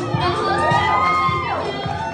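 A young girl's amplified singing voice holding one long belted note over a backing track, gliding up into it about a third of a second in and falling away near the end, with an audience cheering.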